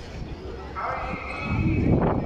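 Maghrib call to prayer (azan) sung by a muezzin over the mosque's loudspeakers: a man's voice starts a long held note about a second in, over low crowd noise.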